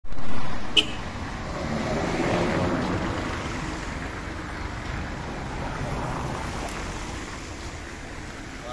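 Street traffic noise on a wet road, a steady hiss of passing vehicles with faint voices mixed in. A sharp click comes just under a second in.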